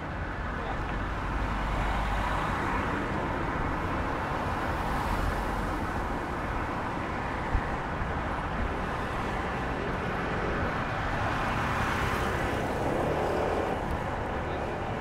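Street traffic: cars and a van driving past on the road beside the walkway, a steady wash of tyre and engine noise. A single sharp click sounds about seven and a half seconds in.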